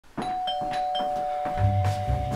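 Two-note ding-dong doorbell chime: a higher note, then a lower one, both ringing on. Low bass notes come in near the end.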